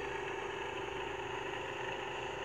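A steady mechanical hum, like an engine idling, with a constant mid-pitched tone that does not change.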